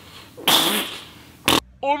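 A man's long, breathy exhale about half a second in, like a weary sigh. It is followed near the end by a brief sharp burst where the sound cuts, and then a man starting to say "Oh".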